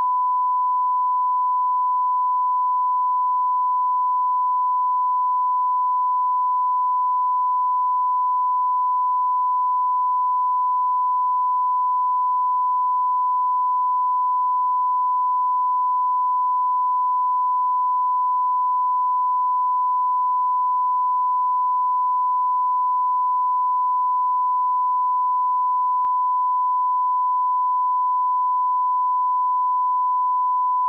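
A steady 1 kHz sine-wave test tone, the reference tone played with SMPTE colour bars, holding one pitch and one level without a break.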